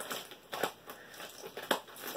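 Plastic mailer bag around a shipping tube crinkling as it is handled, with a few short crackles.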